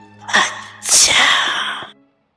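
A person sneezing loudly: a short burst about a third of a second in, then the main sneeze lasting about a second, cut off abruptly.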